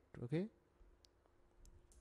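A few faint, sharp clicks of computer keys being pressed while typing code, spread over about a second.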